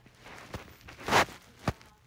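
Close-up handling noise at a phone's microphone: soft rustling with two sharp knocks, about half a second in and near the end, and a louder brief rustle a little past a second in.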